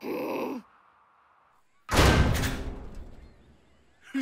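A cartoon character's short groan or sigh falling in pitch, then, about two seconds in, a sudden loud bang-like sound effect that dies away over a second and a half.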